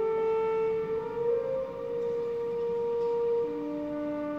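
Symphony orchestra playing a soft passage: a slow line of long held notes that step to a new pitch every second or two, with a lower note coming in near the end.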